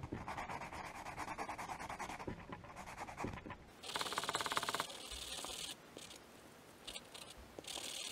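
Wooden dowel end rubbed rapidly back and forth on a sanding block, a fast scratchy rasp. It turns louder and harsher for about two seconds from around four seconds in, then dies down to a few fainter strokes.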